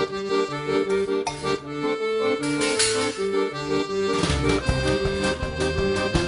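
Accordion playing a melody in held, changing chords. About four seconds in, a low bass line and a regular beat come in underneath it, with a double bass among them.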